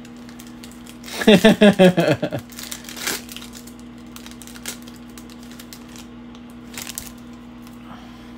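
A man laughs briefly, then a foil trading-card pack wrapper crinkles in scattered short crackles as it is handled and torn open.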